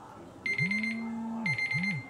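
Two bursts of rapid electronic beeping, about a second and then half a second long, each over a low tone that rises, holds and falls away.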